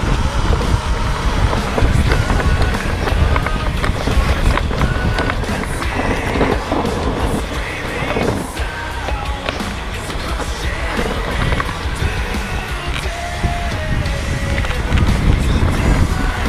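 Mountain bike riding fast down a dirt forest trail: a continuous rumble of tyres over dirt and roots, with rattling of the bike over bumps and wind on the microphone.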